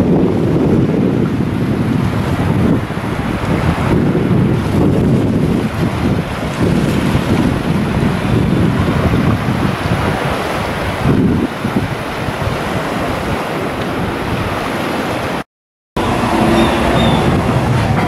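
Wind buffeting the camera microphone over small waves lapping in shallow sea water, with a rumble that rises and falls in gusts. The sound cuts out briefly near the end.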